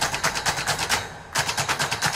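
Rapid drum roll in the background music: fast, evenly spaced percussion strikes at about a dozen a second, broken by a short pause about a second in.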